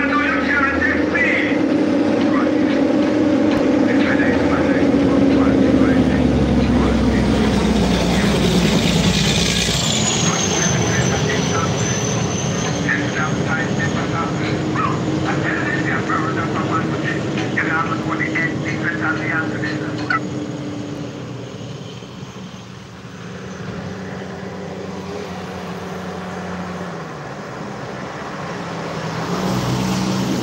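A motor vehicle passing on a road, its engine drone dropping in pitch as it goes by about eight to ten seconds in, then fading away. Another vehicle draws closer near the end.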